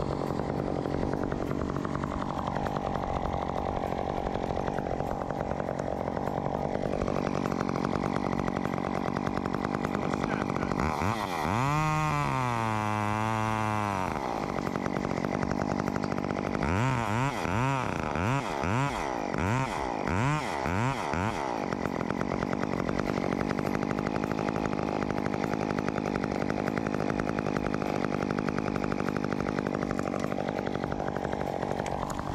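Chainsaw running, with one long rev about eleven seconds in that settles back to a lower pitch, then a string of quick throttle blips from about seventeen to twenty-one seconds.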